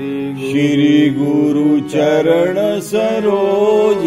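A voice chanting a devotional invocation in long, sliding notes over a held keyboard drone.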